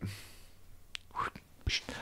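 A lull in conversation: faint room tone with a brief soft, whisper-like voice about a second in and a couple of small clicks, before talking resumes at the end.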